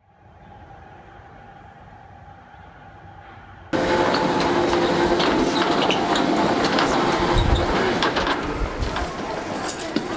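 A faint steady hum with one held tone, then, suddenly about four seconds in, loud street noise: traffic and people talking.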